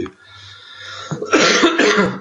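A man coughing: a quieter breath drawn in during the first second, then a loud cough in the second half.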